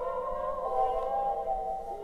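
Eerie theremin-like music with long, slowly wavering held tones, shifting pitch about two-thirds of a second in. It is played by a homemade haunted-radio prop's sound-effects board through its speaker.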